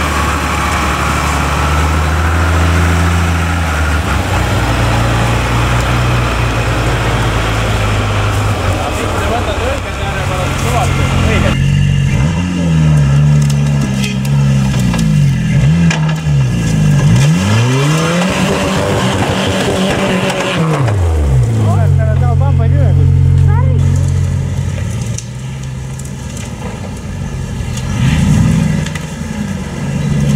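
Engines of off-road trial vehicles running under load in the woods. In the middle they are revved up and down over and over, the pitch rising and falling repeatedly.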